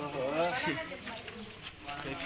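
Indistinct voices of people talking nearby, strongest in the first second and quieter after that.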